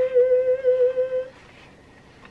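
A woman humming one long, steady note that stops a little over a second in.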